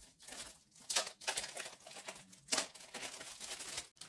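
Thin white protective wrapping being pulled off a smart clock by hand: irregular soft crinkling and rustling, with louder strokes about one second and two and a half seconds in.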